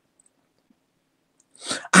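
Near silence for about a second and a half, then a sharp, hissy intake of breath as a man starts speaking again near the end.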